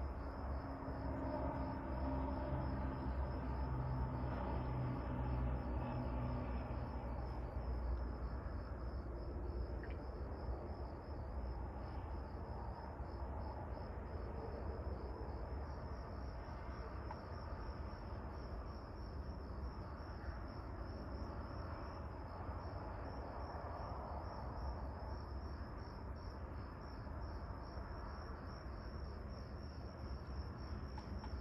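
Crickets chirping in a steady, high-pitched, rapidly pulsing trill, over a low background rumble.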